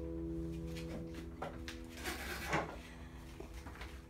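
Final chord of a Takamine acoustic guitar ringing out and slowly fading. Short rustles and a few knocks come partway through, the loudest about two and a half seconds in.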